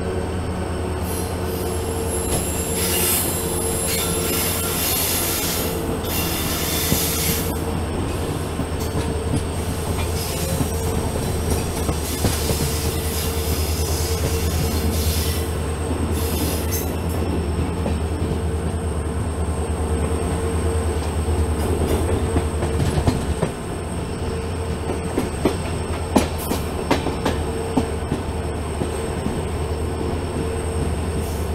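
Express train running, heard from an open coach window just behind its WDP4D diesel-electric locomotive: the engine drones steadily throughout. Two stretches of high-pitched wheel squeal come in the first half. Sharp clicks of the wheels over rail joints follow near the end.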